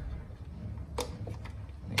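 A faint low rumble of wheeled garbage cans being rolled out over pavement, with a couple of sharp clicks as a cable is worked through the push tab of a plastic electrical box.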